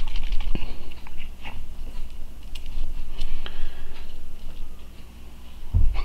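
Light clicks and taps of a small plastic dropper bottle of acrylic paint being handled and opened over a mixing cup. The clicks come in a quick run in the first second or so, then only now and then, over a steady low hum.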